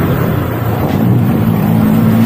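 Honda Click 150i scooter's single-cylinder engine and JVT CVT running steadily at low road speed, with no clutch dragging audible, which the rider puts down to a good clutch bell and lining.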